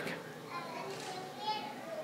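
Faint, high-pitched voices in the background, like children's, calling briefly twice.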